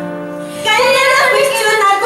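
Female voice singing a traditional Andean song over acoustic guitars. A held note fades over the first half-second, then a new phrase with vibrato begins about two-thirds of a second in.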